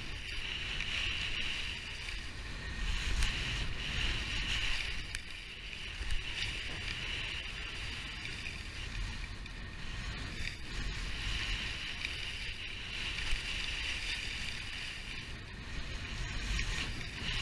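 Skis sliding down a packed snow trail: the edges scrape and hiss on the snow, swelling and fading with each turn. Underneath is a low wind rumble on the microphone and a few small knocks.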